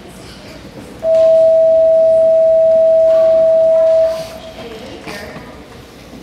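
A loud, steady, single high tone that starts abruptly about a second in, holds for about three seconds, then fades out quickly.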